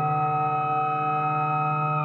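Dark progressive psytrance from a live DJ set in a drumless passage: a sustained synthesizer chord held steady over a fast, pulsing low note.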